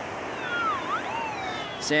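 Minelab SDC 2300 gold detector giving a target signal as its coil sweeps back over the dug hole: a warbling tone that dips in pitch and rises again, showing the target is still in the hole. Steady surf noise runs underneath.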